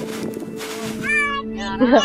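A high, wavering animal call starting about a second in, over steady background music.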